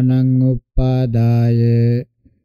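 A voice chanting Pali sutta text on one almost unchanging pitch, with a short break just after half a second in.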